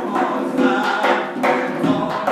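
A man chanting Persian verse in a sung, melodic voice over repeated strikes on a zarb, the goblet drum of the zurkhaneh, keeping time for the club-swinging exercise.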